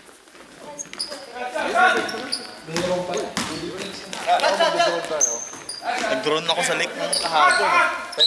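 Basketball game play in a sports hall: the ball bouncing, sneakers squeaking on the floor in short high chirps, and players calling out to one another.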